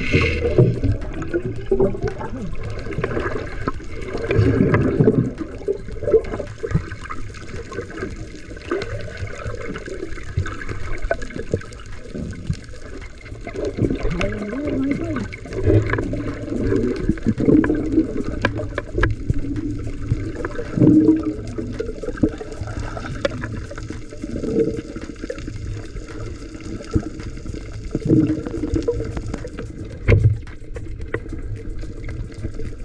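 Muffled underwater water noise heard through a submerged camera: irregular bubbling and gurgling that swells and fades, with a brief sharper splash right at the start.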